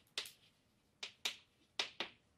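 Chalk striking and scraping on a blackboard as words are written: about four short, sharp taps with quiet gaps between them.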